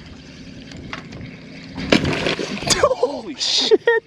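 Steady wind and water noise. About two seconds in comes a sudden splash of a fish striking the topwater lure again, followed by excited shouting.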